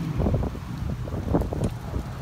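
Wind buffeting the phone's microphone in irregular low gusts, over the rumble of passing street traffic.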